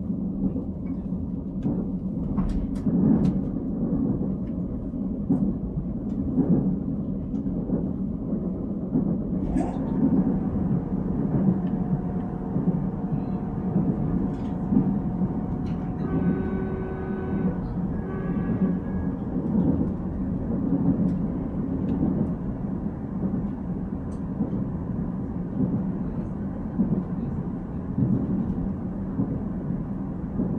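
Korail Nuriro electric multiple-unit train running, heard inside the passenger car: a steady low rumble with a few faint clicks and knocks from the carriage.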